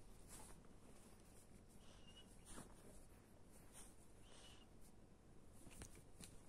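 Near silence: faint rustling and light handling noise from the bedding, with two faint short high chirps about two seconds in and near the middle.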